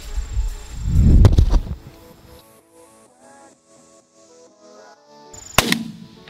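A loud shotgun blast about a second in, followed by a few seconds of music. Another sharp bang comes near the end.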